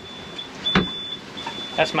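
AIS alarm sounding: a high, steady electronic tone in beeps of about half a second with short gaps, warning of a nearby vessel. A single knock sounds about a second in.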